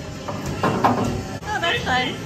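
A recorded voice with music playing through the small built-in speaker of a mini-golf hole's animated computer prop, set off as the ball drops in.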